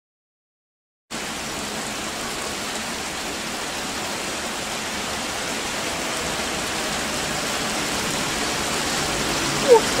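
Steady hiss of rain that cuts in about a second in, with a South Western Railway Class 450 electric multiple unit approaching the platform underneath it, so the sound swells slowly toward the end.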